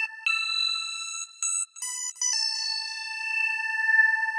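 Synth1 software synthesizer on its 'LFO Brass' preset playing a few high, clean single notes one after another, the last one starting a little over two seconds in and held.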